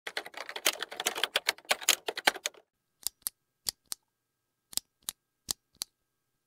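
Typing keystrokes: a fast run of key clicks for about two and a half seconds, then a slower scatter of single keystrokes, a few each second.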